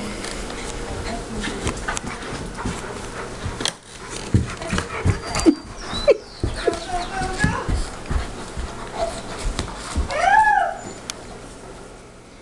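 Two dogs, a Saint Bernard and a Parson Russell Terrier, play-fighting: jaws snapping and chomping with sharp clicks and knocks, short yelping cries, and one high whine that rises and falls about ten seconds in.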